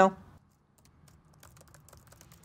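A single spoken 'no', then faint, irregular light clicks, several a second, over a very quiet room.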